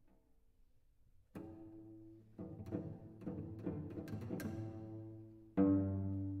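Solo cello. After about a second of near quiet, a low held note enters abruptly. A run of notes with sharp attacks follows over a low drone, then a loud low entry comes near the end.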